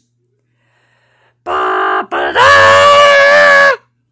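A loud, long shout from a voice, held at one steady pitch: a short burst about a second and a half in, then a longer, louder cry of about a second and a half that cuts off sharply.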